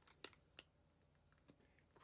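Near silence with a few faint light ticks: a felt-tip marker and hands working on a packaged action figure while it is being signed.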